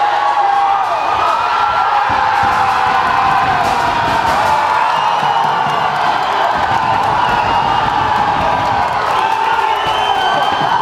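Fight crowd cheering and shouting as the bout ends in a finish, many voices holding loud yells over a steady roar.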